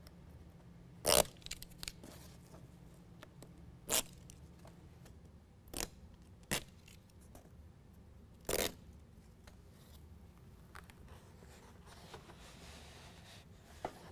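About five short rasping tears, the first and loudest about a second in: hook-and-loop (Velcro) strips and their adhesive backing being peeled and pulled apart while the liner is fitted.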